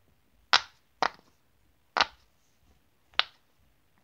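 Silicone keyboard pop-it fidget toy being pressed: four sharp single pops at uneven intervals.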